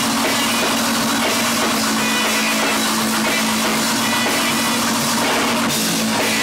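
Live rock band playing loud, with a drum kit and electric guitar over one steady held low note.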